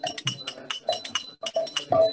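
Small brass hand cymbals (kartals) struck in a quick, even kirtan rhythm, about six ringing clinks a second, with voices low underneath between sung phrases.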